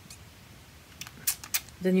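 A few light clicks and taps about a second in, from a glass dropper pipette being handled against its bottle.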